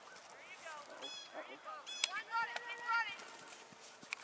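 Distant voices calling out in short, high-pitched cries, several overlapping.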